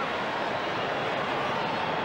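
Steady crowd noise from a packed football ground, a dense hubbub of many voices with a few faint shouts standing out.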